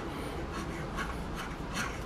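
Steel wire saw pulled back and forth around a PVC pipe, the wire rubbing through the plastic in a steady run of strokes. The wire cuts by friction heat, melting its way into the pipe.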